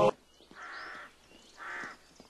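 A bird calling twice: a call of about half a second, then a shorter one about a second later.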